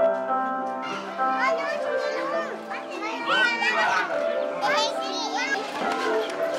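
Young schoolchildren shouting and chattering at play, their high voices rising and falling, starting about a second in, over background music with held notes.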